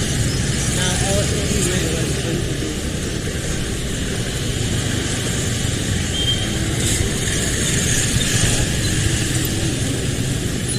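Steady street noise of vehicles and motorbikes, with faint voices in the background.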